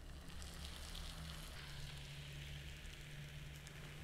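Crepe batter sizzling faintly and steadily on the hot underside of a vintage Sunbeam M'sieur Crepe pan as it is dipped in the batter to coat it.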